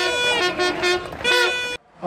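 Horns tooting among a crowd: a long held note, then several shorter blasts, at times two pitches sounding together. The sound cuts off suddenly near the end.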